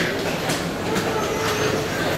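Thyssen hydraulic elevator running with a steady mechanical hum, with people's voices in the background.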